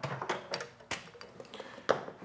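A few light clicks and taps, the loudest near the end, from the leather chin strap and its small metal hardware being handled on the workbench.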